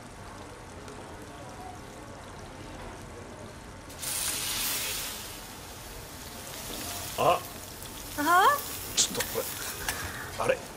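Meat sizzling on a hot pan, starting suddenly about four seconds in and then fading. The food is burning.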